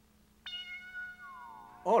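Cartoon electronic sound effect of a robot's chest video screen switching on: a steady electronic tone that starts abruptly about half a second in, with a falling glide near the end.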